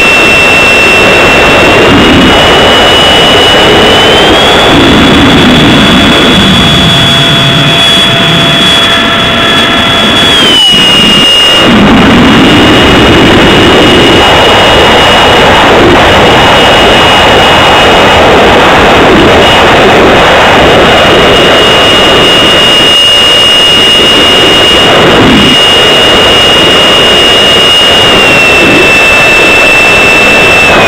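Electric motor and propeller of a radio-controlled model airplane, heard from a camera on board: a loud, high, steady whine over rushing wind noise, its pitch stepping up and down as the throttle changes. The whine dips and drops in pitch about ten seconds in, and falls again near the end.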